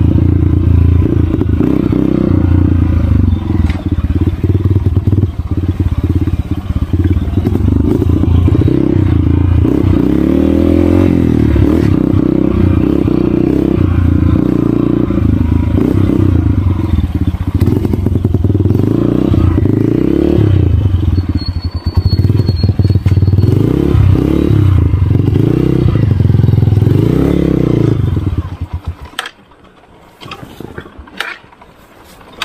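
Dirt bike engine running on a rough trail, its revs rising and falling over and over as the rider works the throttle. The engine sound drops away sharply near the end.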